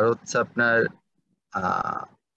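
A man's voice speaking: a short burst of speech, a pause of about half a second, then a drawn-out voiced sound near the end.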